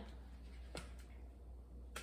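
Quiet room tone with a steady low hum and two faint clicks just under a second in, from glass bottles being handled on the counter.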